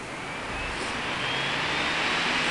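A high mechanical whine rising steadily in pitch over a rushing noise that grows louder.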